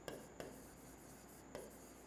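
Faint strokes of a marker pen writing on a board: a few short scratches and taps.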